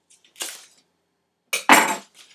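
Paper envelope being slit open with a thin blade: a short rasp of paper, then a louder, longer rip near the end.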